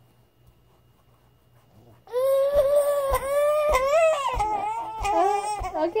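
A toddler wailing and crying in protest, starting suddenly about two seconds in after a quiet moment and going on loudly in long, wavering sobs broken by short breaths.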